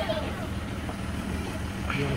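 A tractor engine idling steadily while the hayride wagon it pulls stands still.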